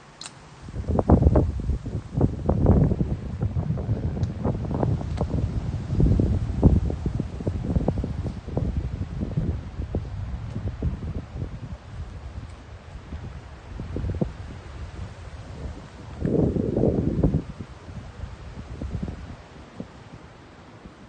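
Wind buffeting the microphone in gusts: a low, rumbling noise that swells and fades irregularly, with a stronger gust about sixteen seconds in.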